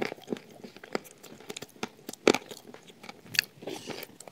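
Close-up eating sounds of shortbread with chocolate-nut spread: chewing, with irregular sharp clicks and smacks of the mouth, the loudest a little over two seconds in and another at about three and a half seconds.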